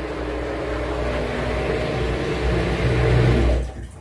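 Front-loading inverter washing machine running as its spin cycle starts: a steady whir over a low hum, its tones shifting as the drum turns, dropping away near the end.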